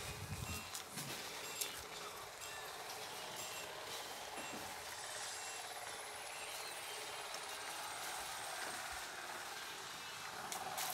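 Faint, steady background room noise, with a few soft clicks in the first two seconds.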